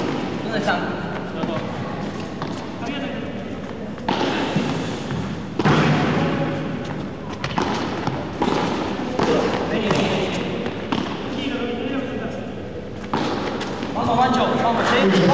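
Padel ball being struck with solid paddles and bouncing off the court's glass walls and floor during a rally: a run of sharp, irregular knocks under voices.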